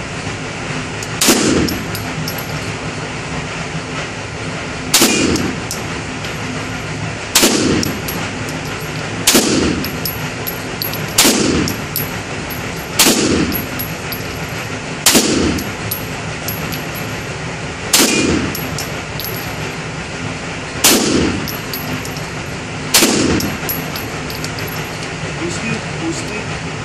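Ten single shots from a Beretta 92 FS 9mm pistol, fired one at a time about two to three seconds apart. Each shot is followed by a short echo off the walls of an indoor range.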